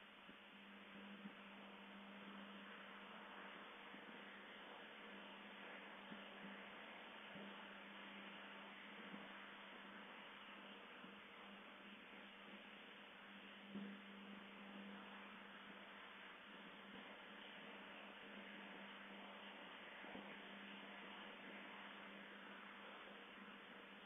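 Near silence: room tone with a steady hiss and a faint low hum, broken by a few faint, short clicks.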